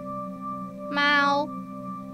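A voice saying the Cantonese word maau1 ('cat') once, about a second in, on a high level tone. Under it runs a steady drone of binaural-beat tones.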